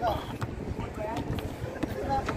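Players' voices calling out faintly across an outdoor concrete basketball court, with a couple of sharp knocks from the play.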